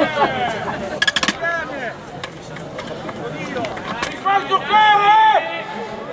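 Men shouting across an outdoor football pitch, with a long drawn-out shout near the end and a brief rattling burst about a second in.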